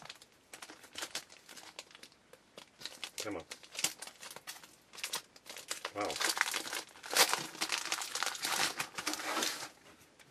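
Foil wrapper of a Bowman jumbo baseball card pack being crinkled and torn open by hand: irregular crackling, busiest in the second half.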